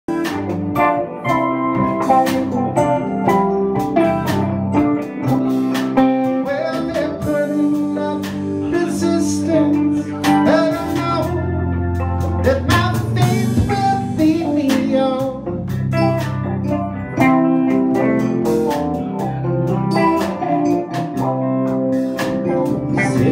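A live band playing the instrumental opening of a song, led by guitar, with sharp percussive strokes running through it.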